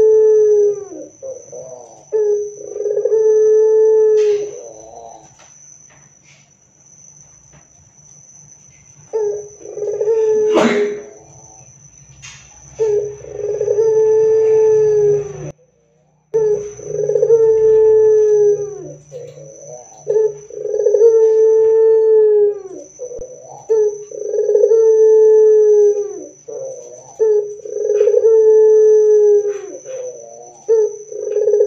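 Barbary dove (puter) cooing: a run of long, drawn-out coos, each about two seconds and ending in a drop in pitch, repeated every few seconds. A single sharp knock comes about ten seconds in, and a faint steady high whine runs underneath.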